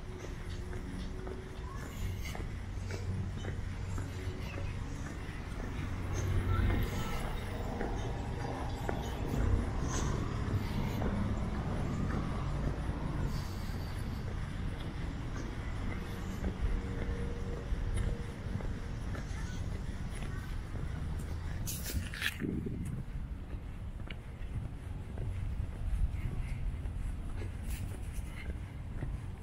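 Residential street ambience heard on foot: a steady low rumble of traffic, with faint voices in the middle stretch and a brief sharp sound about 22 seconds in.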